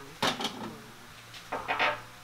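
Two short bursts of metallic clatter from a steamer being handled, one just after the start and a longer one about a second and a half in, over a faint steady hum.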